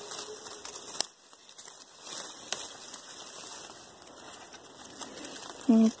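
Oak leaves and twigs rustling and crinkling as a branch is handled close by, with two sharp clicks about a second and two and a half seconds in.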